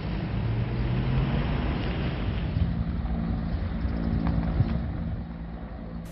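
A steady low engine hum with a mechanical drone, easing off slightly near the end.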